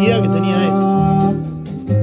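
A Brazilian song in Portuguese played back over a hi-fi amplifier and loudspeakers. A wavering sung note ends early on, then guitar and accompaniment carry on between the vocal lines.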